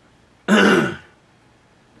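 A man clears his throat once, a short sound of about half a second with a falling pitch.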